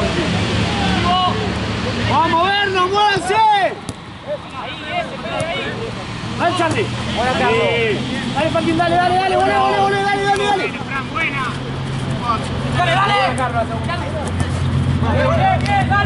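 Players' voices shouting and calling out across the pitch during football play: several short shouts and one long held call about ten seconds in, over a steady low hum.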